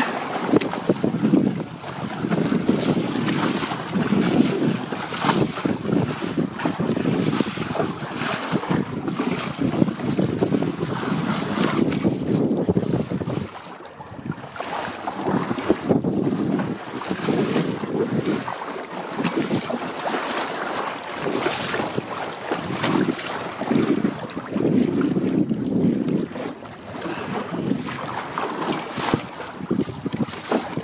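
Wind buffeting the microphone in uneven gusts, over water slapping and rushing along the hulls of a WindRider 16 trimaran sailing through choppy water. The noise eases briefly about halfway through.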